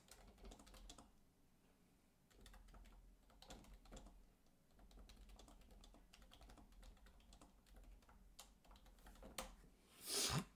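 Faint, irregular clicks of typing on a computer keyboard, with a couple of slightly sharper clicks near the end.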